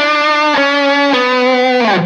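Electric guitar, a Tagima Stratocaster-style, playing a plain descending single-note line with no slides or bends. A new picked note comes about every half second, each a step lower, and the last one drops in pitch near the end.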